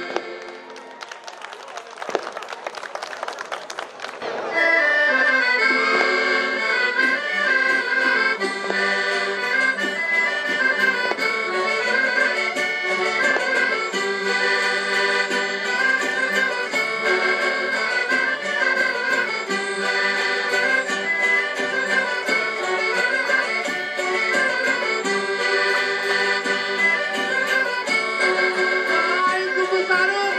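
Portuguese folk band playing a lively traditional dance tune, led by accordions with guitars and a bass drum. The first few seconds hold only a quieter, noisy clatter; the full band comes in loud about four seconds in and plays on steadily.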